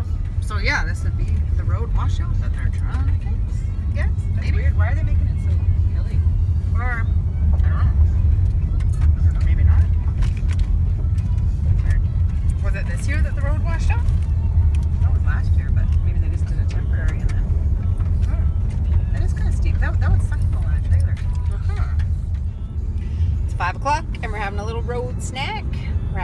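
Steady low rumble of a vehicle driving on a gravel road, heard from inside the cabin.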